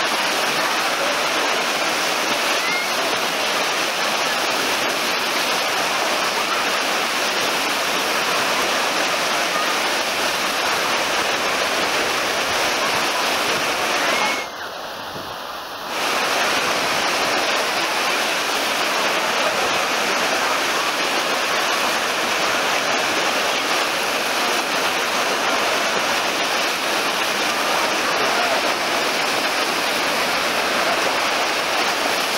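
Wave pool in full swing: a steady rushing of breaking, churning water, with the voices of the bathers mixed in. The sound drops briefly about halfway through.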